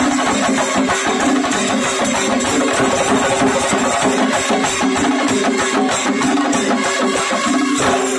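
Kerala chenda drums played in a fast, dense rhythm together with a brass band playing a short phrase over and over, loud and continuous.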